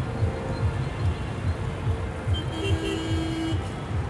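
Outdoor traffic noise with a continuous, uneven low rumble, and a vehicle horn sounding once for about a second, just past the middle.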